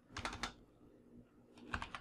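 Computer keyboard keystrokes: a quick run of several key presses about a quarter second in, then quiet, then another short run of keys near the end.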